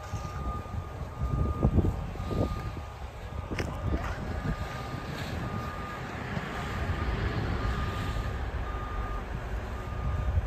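A heavy-equipment reversing alarm beeping evenly, a little more than once a second, over the low running of diesel machinery. A single sharp click sounds about three and a half seconds in.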